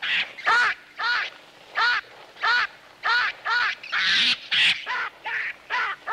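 Baboon giving short, arched screams about twice a second, heard through a hall's loudspeakers: a distress call from an animal whose fist is trapped in a hole in an ant-heap.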